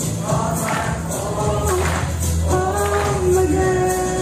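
Group of students singing a graduation song in unison with instrumental accompaniment that keeps a steady beat. The singers hold long notes, with a longer held note from about halfway through.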